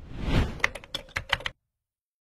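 Outro sound effect: a short swish, then a quick run of about eight keyboard-typing clicks over about a second, cutting off suddenly into silence.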